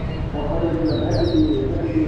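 Small birds chirping: a quick run of about four short, high, falling chirps about a second in, over a low murmur of voices.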